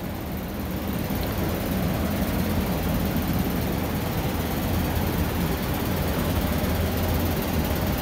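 Steady low hum of a large greenhouse ventilation fan running, with no change in pitch.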